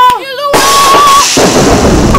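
A shouted cry is cut into about half a second in by a loud film blast sound effect. A sudden crack of noise settles into a deep rumble, like a thunderclap or explosion, for a supernatural strike.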